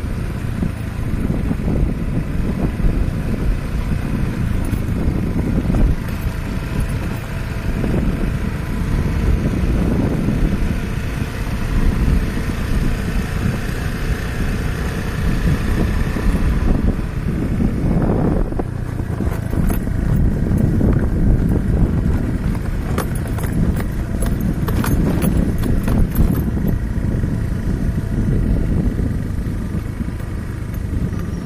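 A vehicle travelling along a rough unpaved road: a steady low rumble, with clicks and rattles in the second half.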